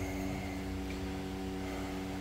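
A steady low hum made of several even tones, with a faint high whine above it.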